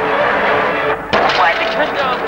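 Film soundtrack music playing, broken just after a second in by a short dip and then a sudden loud bang, after which the music carries on with a new, busier sound.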